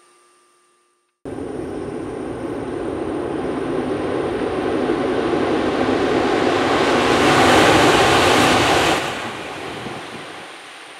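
Tohoku Shinkansen high-speed train approaching, heard as a steady rushing rumble that cuts in suddenly about a second in and grows louder for several seconds, then drops off sharply near the end.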